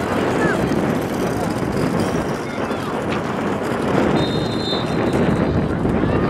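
Wind rumbling steadily on the camcorder microphone, with faint distant voices of players and spectators calling out across the soccer field.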